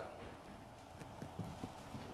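Quiet room tone with four or five faint, soft taps in the second half.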